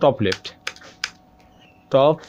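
Typing on a computer keyboard: a few separate keystrokes while code is being edited.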